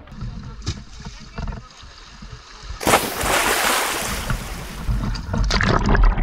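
A splash as the camera goes into the sea, about three seconds in, followed by underwater rushing and bubbling that fades to a low rumble.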